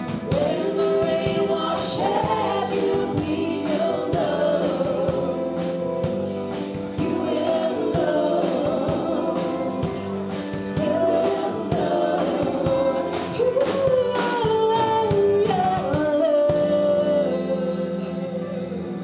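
Live band performance: a woman singing lead over electric guitar and bass with a steady beat.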